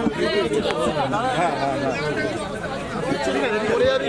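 Several people's voices talking over one another: overlapping chatter with no single clear speaker.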